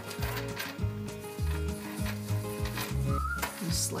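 Upbeat background music with a steady, evenly paced bass line; a whistled melody comes in about three seconds in.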